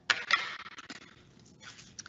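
Light rustling and scraping of craft materials being handled on a tabletop, fading over the first second, with a sharp click at the very end.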